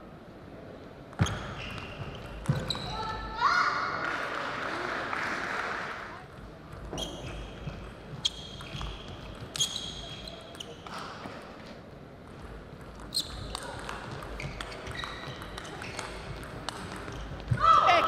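Doubles table tennis rallies: the plastic ball clicking off the bats and the table in quick exchanges, with players' shoes squeaking on the court floor.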